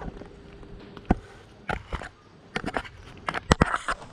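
Footsteps on stairs: a string of irregular knocks and scuffs, sparse at first and thicker in the last second.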